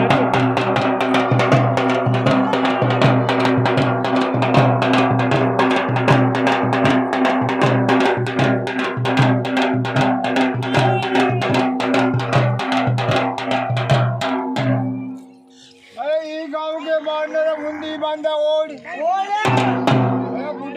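Rajasthani dhol beaten with a stick and hand in a fast, even rhythm under folk singing. About fifteen seconds in the drum drops out, leaving a voice singing alone for a few seconds, and the drumming comes back near the end.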